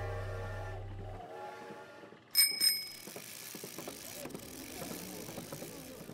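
Music fades out, then a bicycle bell rings twice in quick succession about two seconds in, the loudest sound here. A soft, irregular rattling and clicking follows.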